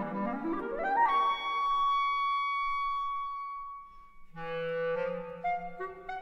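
Solo clarinet running up a fast scale to a long held high note that fades away. After a short gap about four seconds in, the accompaniment comes back in with a sustained low note and chords, and the clarinet melody resumes over it.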